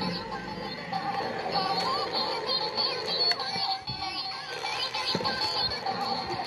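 A battery-powered toy Mid-Autumn lantern plays an electronic tune with a synthesized singing voice.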